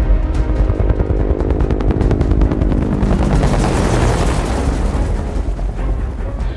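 Dramatic action film score: sustained low tones under rapid, dense percussive hits, with a rushing swell that builds and peaks about two-thirds of the way through.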